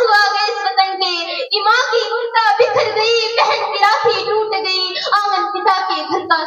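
A young female voice singing lines of a patriotic poem into a microphone, in held, wavering melodic phrases with short breaks between them, amplified through a PA system.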